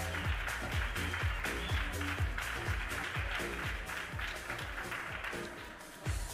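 Audience applause over background music with a steady beat, the clapping dying away toward the end.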